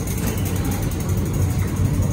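A steady low rumble with a faint even hiss, without distinct knocks or tones.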